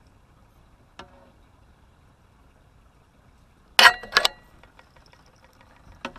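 Two loud, sharp metallic knocks about half a second apart, each with a brief ring, a little before the two-thirds mark, as fishing gear knocks against the boat's metal rail, followed by a run of light ticks. A fainter clink comes about a second in.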